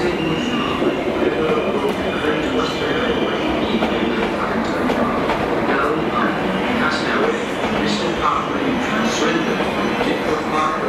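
Passenger multiple-unit train running past on the station tracks, a steady rumble of wheels and running gear with some clickety-clack over the rail joints. Voices are heard faintly in the background.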